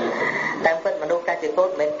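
A man speaking in Khmer, a monk preaching a Buddhist sermon in a continuous stream of speech.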